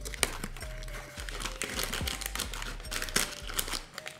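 A cardboard snack box being opened and a plastic-wrapped honey cake (pão de mel) pulled out of it, the packaging crinkling with many small irregular crackles.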